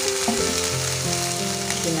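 Food frying in hot oil in a pan, a steady sizzle, with background music of held notes underneath.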